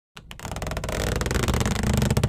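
Intro sound effect for an animated logo: after a brief silence it starts and swells steadily louder with rapid pulsing, building into intro music.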